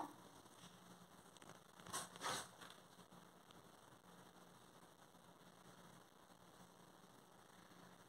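Near silence with faint hiss, and two brief soft rustles about two seconds in from hands spreading chopped filling over raw dough.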